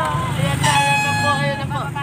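A vehicle horn sounding one steady blast of about a second in the middle, over the steady hum of a running motor vehicle engine, with voices near the start.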